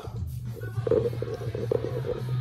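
Background music with guitar plays at a moderate level, with low rumbling and faint knocks from a handheld phone being moved and swung around.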